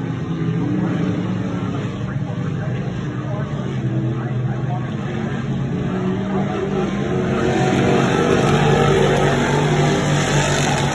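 Sportsman dirt modified race cars running laps, their engines a steady drone that swells near the end as a car passes close by.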